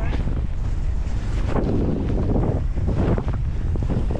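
Wind buffeting a camera microphone during a fast mountain-bike run down a dual slalom track: a loud, heavy low rumble with gusty hiss, right after the start.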